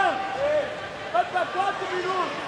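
Indistinct voices carrying over the background chatter of a crowded hall.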